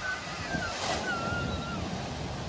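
A Peugeot hatchback wading through a flooded ford, its wheels and bow wave throwing up a steady rush of splashing water over the low sound of the car's engine, with wind on the microphone.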